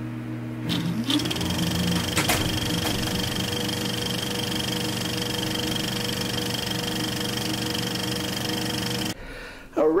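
Old film projector sound effect: a motor hum with a fast mechanical clatter, speeding up about a second in and cutting off suddenly near the end.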